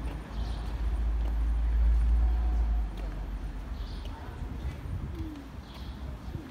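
Outdoor street ambience: a low rumble over the first half, with a few short bird calls over it, heard more clearly near the end.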